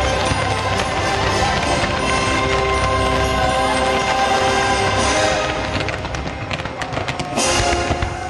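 Orchestral show music with long held notes, played loud outdoors under a fireworks display. About five and a half seconds in the music thins and a rapid string of sharp firework cracks and pops comes through, then a loud burst and the music swells again near the end.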